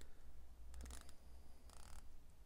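Proxima PX1703's 120-click unidirectional dive bezel being turned by hand, ratcheting in short runs of quick clicks: one run about a second in and another near the end. The clicks are crisp with no back play and sound really solid.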